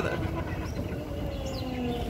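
Renault Twizy electric car driving: steady road and wind rumble with a faint motor whine that slowly falls in pitch as the car slows.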